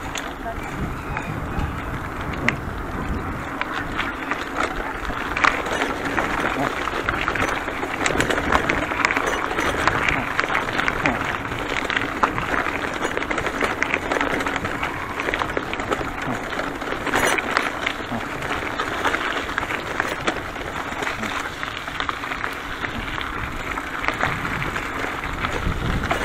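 A bicycle being ridden over rough ground: the tyres rolling, first on a paved lane and then on gravel and a dirt track, with a steady rush of noise and many small knocks and rattles from the bike over the bumps.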